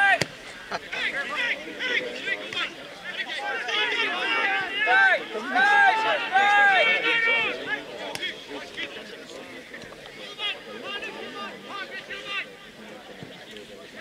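Footballers and spectators shouting during open play, the calls loudest in the middle. A football is struck with a sharp thud just after the start, and again about eight seconds in.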